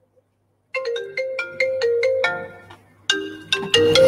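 Phone ringtone: a short melody of quick, bright notes stepping up and down. It starts about a second in, stops briefly, then starts the same phrase again.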